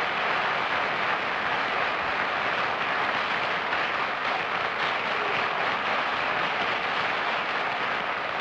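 Studio audience applauding, a steady, dense clapping that holds at one level throughout.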